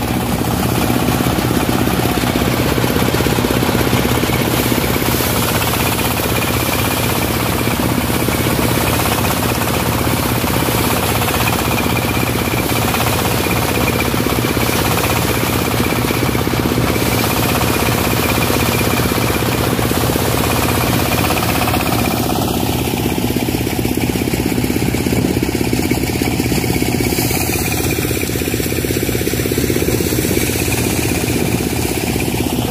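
Motorised paddy thresher (marai machine) running steadily as crop is fed through it, its small stationary engine and threshing drum going continuously. A faint steady high tone sits over the machine noise.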